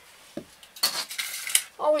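Light metallic clinking and scraping of a chrome towel bar being handled and pressed into place on the wall: a small tick, then a short scrape about a second in.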